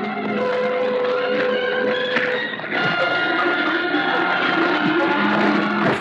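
Dramatic music from an old film soundtrack under a fight scene, with long held notes; the chord changes about halfway through.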